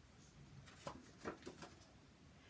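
Near silence with a few faint, short taps and rustles of cardstock being laid out and slid across a marble board.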